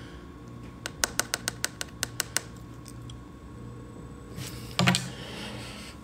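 A quick run of about ten light, sharp clicks or taps over a second and a half, then a short handling bump about five seconds in.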